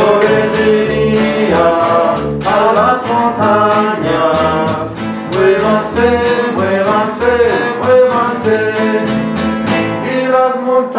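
Acoustic guitar and plucked upright double bass playing a tune together: quick guitar strokes and a moving melody over bass notes changing about twice a second.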